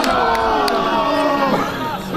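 A small crowd of football spectators shouting and cheering, several voices holding long calls that slowly fall in pitch and ease off about a second and a half in.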